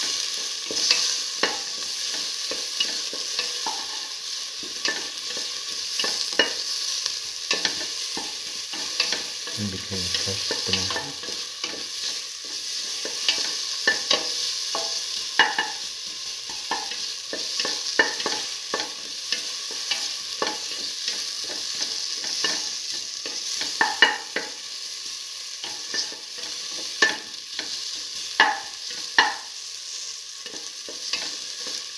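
Chopped tomato and shallots sizzling in hot oil in a metal pan while being stirred, the utensil clicking and scraping against the pan again and again. A few sharper knocks of the utensil on the pan come near the end.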